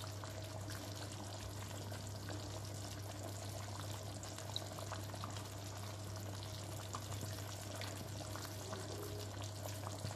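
A pot of tomato fish soup simmering on a gas hob: a steady bubbling hiss, with a steady low hum underneath.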